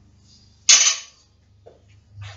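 Loaded barbell dropped onto the gym floor after a snatch attempt: one loud crash with a short metallic ring, and a small knock a second later.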